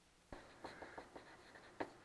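Faint, scattered light taps and strokes of writing, about half a dozen, the clearest shortly before the end, in an otherwise quiet room.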